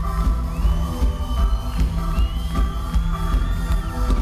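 Live band playing an instrumental passage: a steady drum beat under sustained keyboard chords, with a high note that slides up and is held, twice.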